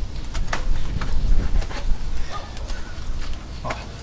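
Cloth scrubbing a soapy truck chassis by hand, with irregular rubbing, scraping and small knocks over a low rumble.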